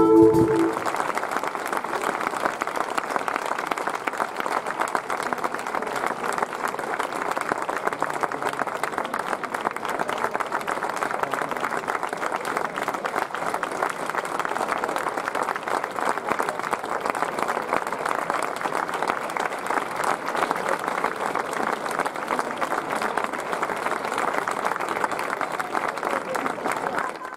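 A wind band's final chord cuts off in the first moment, then a large audience applauds steadily and without a break.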